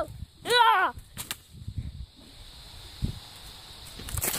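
A child's short yell, then two sharp cracks about a second in, a stick or bamboo cane striking during a play sword fight. A dull thump follows near the end.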